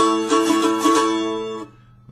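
Mandolin strumming an A major chord with a pick in a quick, even rhythm; the chord fades out near the end.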